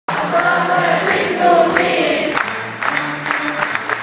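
Many voices singing a melody together with an orchestra, the wavering sung line strongest in the first two and a half seconds, then held instrumental notes with sharp percussive hits.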